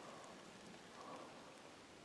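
Near silence: a faint steady hiss of light rain beginning to fall.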